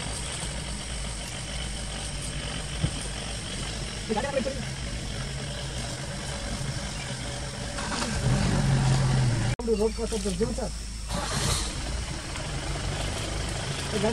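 Safari vehicle's engine idling steadily under quiet talk, rising in level for about a second and a half some eight seconds in, then cutting out for an instant as the sound breaks.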